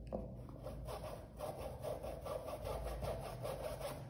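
A sanded No. 12 paintbrush rubbing paint onto cotton cloth in faint, repeated short strokes.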